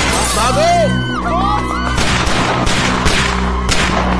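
Film soundtrack: a music score under a string of sharp cracks and breaking glass, with people crying out in the first second or so.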